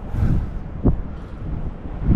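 Wind buffeting the microphone as an uneven low rumble, with one sharp click just under a second in.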